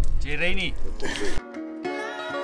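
A man's voice calling out over a low rumbling noise, then an abrupt cut, about one and a half seconds in, to background music of plucked strings.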